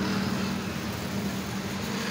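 A motor vehicle running nearby: a steady low engine hum over a haze of traffic noise.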